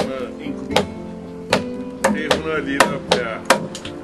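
Wooden mallet striking a chisel to hollow out a log: about nine sharp knocks at uneven spacing, over steady background music.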